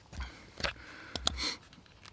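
Light handling noises: a few short clicks and soft rustles as a piece of leather and a metal revolving hole-punch plier are picked up and fitted together, with a small cluster of clicks past the middle.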